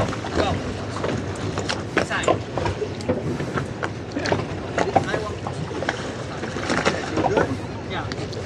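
Steady wind and water noise on open water, with faint, distant voices calling out in short bursts and a few light knocks.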